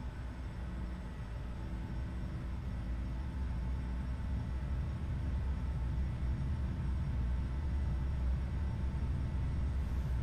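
Simulated jet engine sound at full takeoff power during the takeoff roll: a steady low rumble that slowly grows louder as the aircraft gathers speed.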